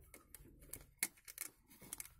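Faint, irregular clicks and creaks of a screw being turned by hand with a screwdriver into a plastic bottle cap and plastic tube, the loudest click about a second in.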